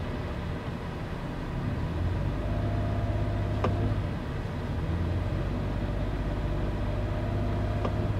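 Lexus RX450h's 3.5-litre petrol V6 running at idle with the car parked, a steady low hum that dips briefly about four seconds in, with one faint click just before the dip.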